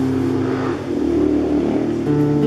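Nylon-string classical guitar: a chord rings and fades, then a short noisy slide sounds along the strings and a new low bass note comes in about halfway through, before the next chord.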